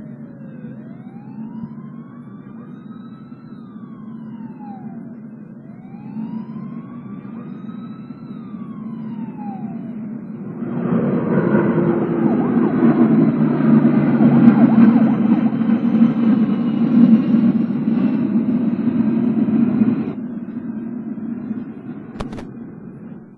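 City traffic noise with a siren wailing twice, each wail rising and then falling slowly. About halfway through the traffic noise gets louder and denser, then drops back a couple of seconds before the end.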